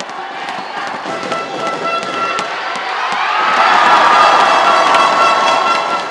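Arena crowd cheering and shouting, swelling louder about halfway through, with a steady held tone sounding over it and scattered sharp claps.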